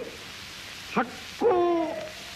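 A man's voice declaiming a formal speech in Japanese through an old newsreel recording with steady hiss. About a second in comes a short syllable, then near the end a long, drawn-out syllable that falls slightly in pitch.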